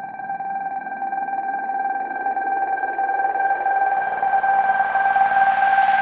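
Psytrance synthesizer holding one steady high tone while a rushing noise swells beneath it and grows steadily louder, with no beat: a build-up in the track.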